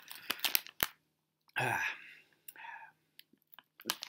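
Close-miked mouth sounds of sour pickle ball candy being chewed: a quick run of crunches and clicks in the first second, with one sharp knock among them. About a second and a half in, a short spoken 'uh' is the loudest sound, followed by a few faint mouth clicks.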